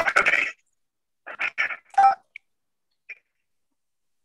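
Choppy, clipped fragments of a voice coming through a video call, a few short bursts with dead silence between them where the call's audio drops out, fading away by about two seconds in.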